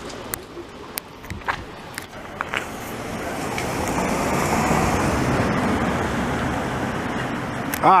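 A vehicle passing along the street: its tyre and engine noise swells over a few seconds and then fades away. A few light clicks come before it.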